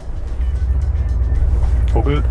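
Background music over a deep, steady low rumble that comes up suddenly at the start: the Mercedes-Benz G 500 4x4²'s V8 heard from inside the cabin while driving.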